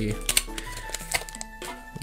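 Trading cards being handled and sorted by hand: a few light, sharp taps and clicks, over quiet background music.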